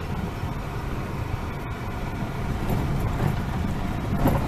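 Steady low rumble of a car's engine and its tyres on a gravel dirt track, heard from inside the cabin.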